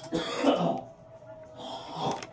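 A person clearing their throat: two rough bursts, the first and louder lasting most of a second, the second near the end.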